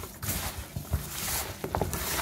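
Gloved hands mixing salted carp pieces and cabbage with garlic and ground pepper in a plastic basin: irregular wet rustling and squishing of the mixture.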